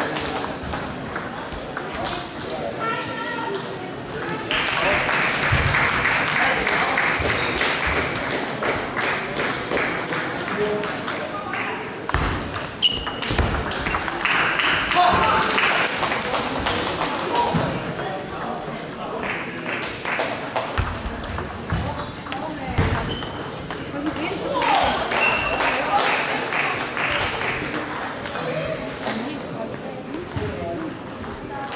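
Table tennis rallies: a celluloid ball clicking off rackets and the table in quick, irregular series, with pauses between points. Behind it, the steady chatter and echo of a busy sports hall with other matches going on.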